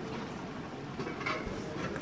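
Steady, faint rushing of a nearby river.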